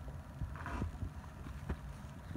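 Soft, irregular low thumps and knocks with a brief rustle about two-thirds of a second in: handling noise from a handheld phone as it is moved about.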